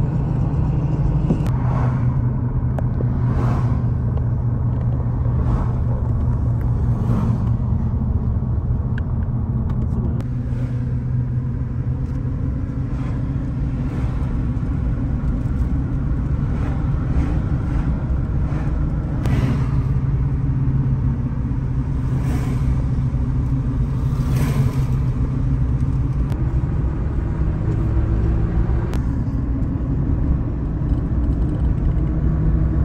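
Car road noise and engine hum heard from inside the moving car's cabin, a steady low rumble. Several brief swells of noise rise and fade over it as oncoming cars pass.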